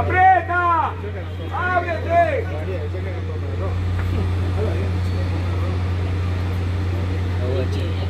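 Two loud shouts in the first couple of seconds, each rising then falling in pitch, as someone calls out during a football match. A steady low hum and faint scattered voices run underneath.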